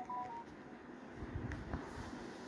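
A few short electronic beep tones that stop about half a second in, followed by faint room noise with a couple of soft knocks.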